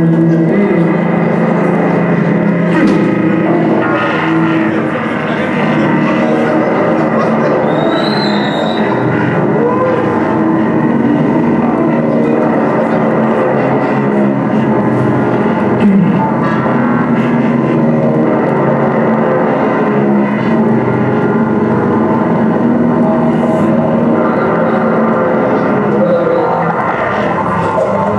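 Live noise-music improvisation: a dense, steady mass of droning tones and noise, with a performer's voice going through a handheld microphone into the mix.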